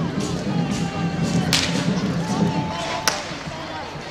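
Parade crowd: many voices with music underneath. Two sharp cracks cut through, about a second and a half in and again about three seconds in.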